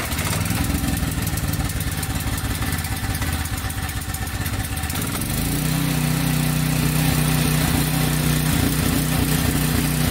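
Portable gasoline generator running just after being pull-started, rough at first and then settling into a steadier, slightly louder run about five seconds in.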